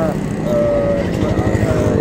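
A man's voice in mid-sentence, drawing out a hesitating vowel, over a steady low background rumble.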